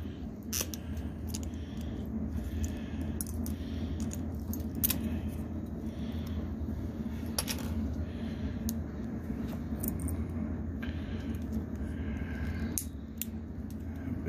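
Diagonal side cutters clicking and snapping the plastic housings of RJ-45 jacks apart, with small parts clicking together: irregular sharp clicks over a steady low hum.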